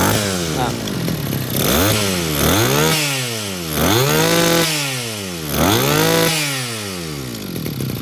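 Small two-stroke engine of a Zenoah GE2KC brush cutter running without its muffler fitted, revving up and dropping back about five times as the throttle at the carburettor is worked by hand.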